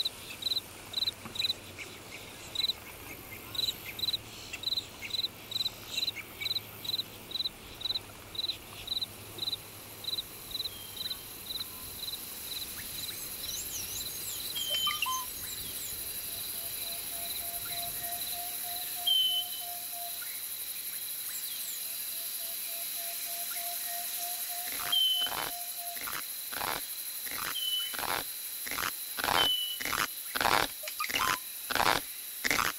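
Countryside insect and bird ambience. For the first twelve seconds or so an insect chirps steadily about twice a second. After that a steady high insect drone takes over, with a few short bird calls and a steady hum. Near the end a rhythmic pulsing starts, about two beats a second.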